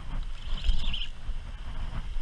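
Spinning reel being cranked to retrieve line, its gears giving a high whir that swells and fades about once a turn, over a low rumble of wind and surf.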